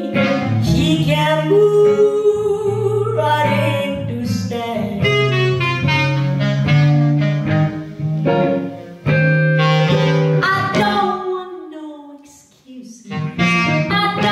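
Clarinet playing a solo over electric archtop guitar accompaniment in a slow jazz-blues. Near the end the music falls away briefly, and the female singer comes back in.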